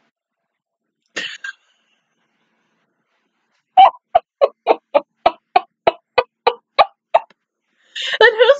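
A woman laughing: a short burst about a second in, then about a dozen evenly spaced 'ha' pulses, roughly three a second, from about four seconds, with her hand over her mouth.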